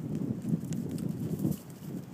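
Goats and a puppy running on hard dirt ground: a rapid, irregular patter of hoof and paw steps that eases briefly near the end.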